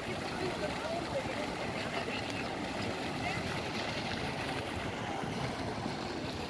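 Steady splashing of a fountain jet falling into a shallow pool, under the indistinct chatter of a large crowd.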